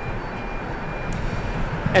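Steady street traffic noise from vehicles on the road.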